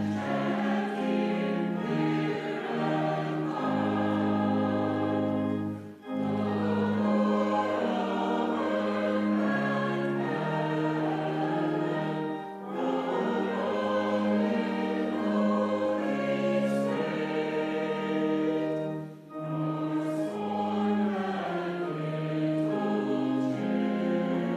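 Church choir of mixed men's and women's voices singing a hymn in parts over held low notes. The phrases break briefly about six seconds in, again near thirteen seconds and again near nineteen seconds.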